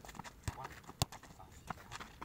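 Sharp thuds of a football being struck and feet on hard dirt, a few separate knocks with the loudest about a second in.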